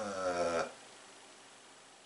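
A man's drawn-out hesitant hum, a wordless 'mmm' lasting about half a second while he tries to remember, then a quiet room.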